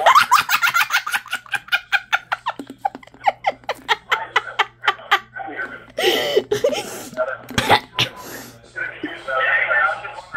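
A child giggling in a long fit of quick, repeated bursts of laughter, several a second, turning breathier about six seconds in, with another burst near the end.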